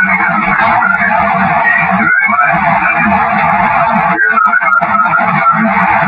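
Loud, heavily filtered, amplified recording: a steady dense hiss in the middle range over a choppy low buzz, with a brief dropout about two seconds in and faint wavering tones around four to five seconds in.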